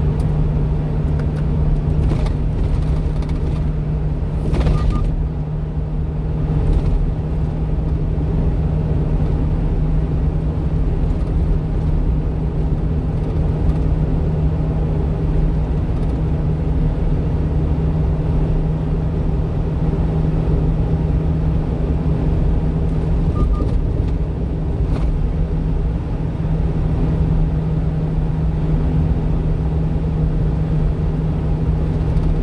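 Steady engine drone and road rumble inside the cab of a one-ton refrigerated box truck cruising on an expressway, with a few faint clicks about two to five seconds in and again near twenty-five seconds.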